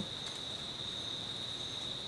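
Insects, crickets or similar, giving one continuous high-pitched trill that holds steady on a single note.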